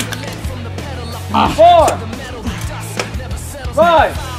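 Background music with a steady, repeating bass line, over which a man shouts two loud, drawn-out calls about two seconds apart, in the pace of a referee's count.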